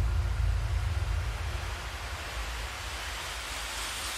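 Cinematic sound-design effects: a deep bass rumble left by a sub-drop that fades over the first couple of seconds, then a hissing whoosh that swells toward the end with a faint rising whistle.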